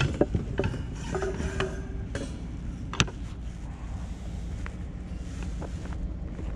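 Knocks, clatter and rattles of curbside junk being handled: a wire rack and a small metal wire stand picked up and set down, with a brief metallic ring early on and a sharp clack about three seconds in, over a steady low rumble.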